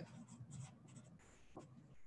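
Faint pen strokes scratching on paper: a figure being written down by hand.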